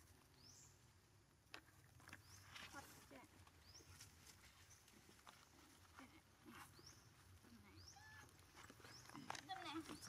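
Faint scattered clicks and rustling as monkeys pick rice out of a plastic bag, under a thin high chirp that repeats about once a second. A few louder short sounds come near the end.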